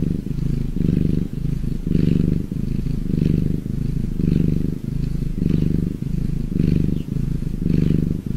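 Domestic tabby cat purring close to the microphone while kneading a soft blanket: a steady low buzz that swells and eases about once a second with each breath.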